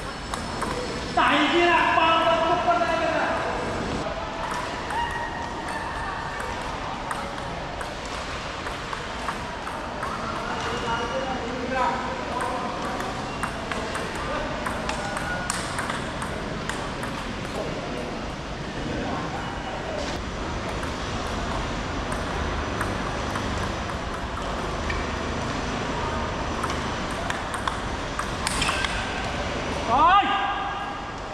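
Table tennis rally: the plastic ball clicking off rubber paddles and the tabletop in quick back-and-forth strikes, repeated through several points.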